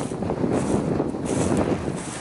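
Wind buffeting the microphone: a steady, rumbling rush of noise.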